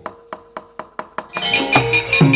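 A run of quick, sharp knocks from the dalang rapping on the wooden puppet chest (cempala and kepyak), about five a second, cueing the gamelan. About a second and a half in, the gamelan comes in loudly with ringing metallophones and drum.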